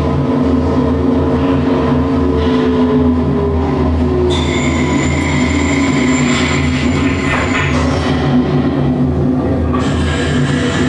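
Hydrolator simulated-elevator ride effects during the mock ascent to the surface: a steady deep rumble and machine hum. A tone falls slowly over the first few seconds, and a high thin whine comes in about four seconds in and stops a few seconds later.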